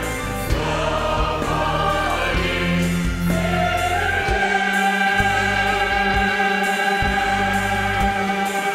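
Large mixed choir singing with an orchestra and percussion; about four seconds in the voices and instruments settle onto a long held chord.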